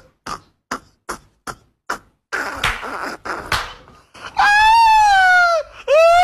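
A person laughing in short, even bursts, about three a second, for the first two seconds. Then comes a noisy commotion, followed by a loud, high-pitched scream of about a second and a half near the end.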